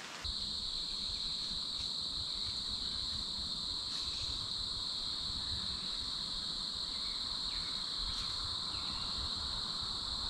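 Steady chorus of crickets: a continuous high-pitched trilling that doesn't let up.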